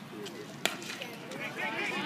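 A single sharp crack of a bat hitting a baseball about two-thirds of a second in, over spectator chatter that swells into shouting near the end.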